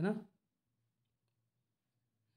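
A man's voice says one short syllable, then near silence.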